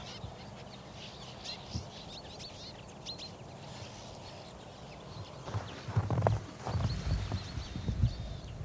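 A large flock of bramblings calling, many short, high flight calls overlapping, thickest in the first half. In the last few seconds a run of loud, low fluttering thumps comes in under the calls.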